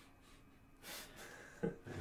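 A man's short, sharp breath about a second in, then a brief voiced sound near the end as he breaks into a stifled laugh.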